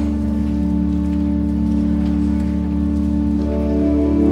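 Pipe organ holding sustained chords, with a new chord of higher notes coming in near the end.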